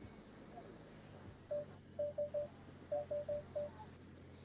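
Eight short electronic beeps of one pitch, in uneven groups of one, three and four, starting about one and a half seconds in, over a low steady hum.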